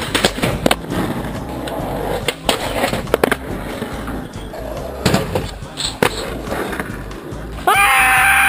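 Skateboard wheels rolling over rough asphalt, with about six sharp clacks of the board popping and landing. Near the end, a loud held yell right at the microphone.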